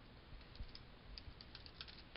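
Faint computer keyboard keystrokes, a few scattered key presses.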